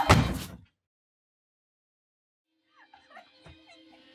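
A door slamming shut: one loud, heavy slam that rings out for about half a second and then cuts to dead silence. Faint, sparse music with a few clicks comes in near the end.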